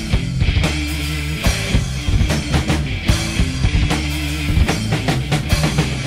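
Rock band playing live through an instrumental passage with no vocals: a drum kit with cymbals keeps a busy beat under guitar and low sustained notes.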